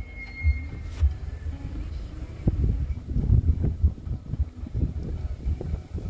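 Wind buffeting an outdoor phone microphone in uneven low gusts, with a few sharp bumps from handling.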